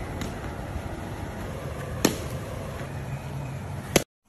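A cricket bat striking a ball with one sharp crack about two seconds in, over a steady low outdoor rumble; a second sharp knock comes at the very end.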